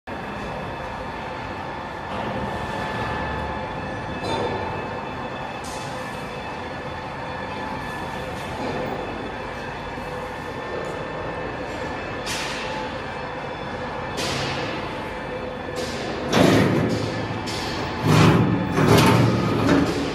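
Running machinery of a rotary charcoal carbonization furnace line: a steady motor hum carrying several fixed tones. In the last few seconds louder, irregular rattling knocks break in over the hum.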